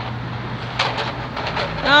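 Wooden push-along baby walker rolling over rough concrete: a steady rumble from its wheels, with a few light knocks from the loose wooden blocks in its tray.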